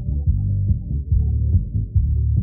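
Live sertanejo band music, heavily muffled so that only the bass and low notes come through, with frequent strong low beats.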